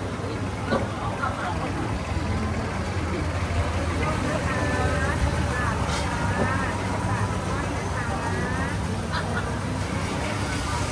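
A steady low engine hum runs under people's voices and chatter. Short arched calls stand out from about four seconds in.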